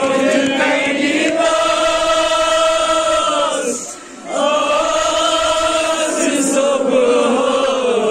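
A group of men chanting a noha, a Shia mourning lament, together in long drawn-out phrases, with a brief breath gap about four seconds in.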